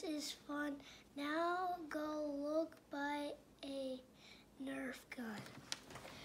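A young boy's voice reading aloud slowly, holding each word in a drawn-out, sing-song way.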